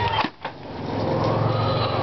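A chicken squawking, startled, for about a second and a half, after a short click near the start.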